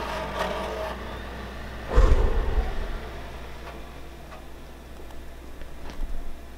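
Desktop PC in a Thermaltake case powering on: its fans spin up into a steady hum. A loud thump comes about two seconds in.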